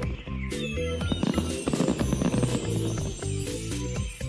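Cartoon signal firework whistling up and bursting into a sparkling crackle, over cheerful background music.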